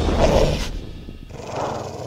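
Animal growl sound effect for a snarling wolf, coming in two rough swells about a second apart.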